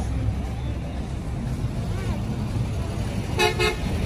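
Low rumble of road traffic, with one short vehicle horn toot lasting about half a second near the end.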